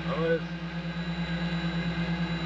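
Soyuz ASU space toilet's air-suction fan running with a steady low hum, drawing the airflow that carries waste away in zero gravity. A short voice sound comes in just after the start.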